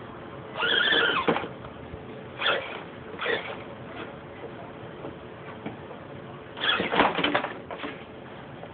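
Axial SCX10 radio-controlled scale crawler's electric motor and geared drivetrain whining in short throttle bursts as it climbs. The pitch rises and falls within each burst. The longest burst comes about a second in, two short ones follow, and a cluster of bursts comes near the end.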